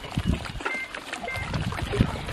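Outdoor lakeside noise: irregular low rumbling from wind buffeting the microphone and water lapping, with a couple of short, thin high chirps near the middle.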